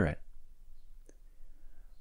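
A pause in spoken narration: the end of a word right at the start, then near silence with one faint, short click about halfway through.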